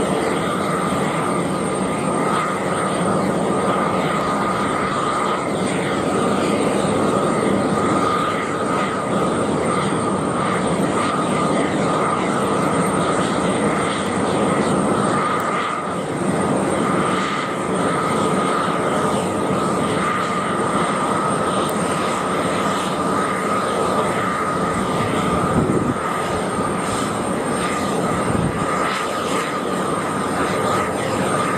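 Boeing 747-400 freighter's four turbofan engines running loud and steady as the jet rolls along the runway, a constant high fan whine riding over the jet rush.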